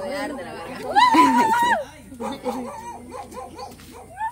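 Several women's voices chattering, with a loud, high, drawn-out call about a second in that lasts under a second.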